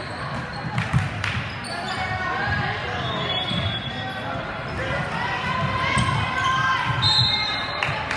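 A basketball bouncing on a hardwood gym floor during play, with a few sharp knocks, the loudest about a second in. Players and spectators call out over it, with the echo of a large gym.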